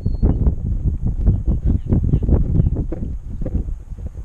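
Wind buffeting and rumbling on an action camera's microphone: a dense run of irregular low bumps that eases off near the end.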